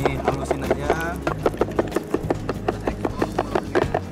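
Stone mortar and pestle pounding black peppercorns to crush them, a quick, steady run of knocks about five a second.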